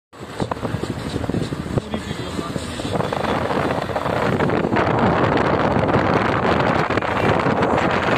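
Road and wind noise inside a moving car's cabin, getting louder a few seconds in, with a few sharp knocks in the first two seconds.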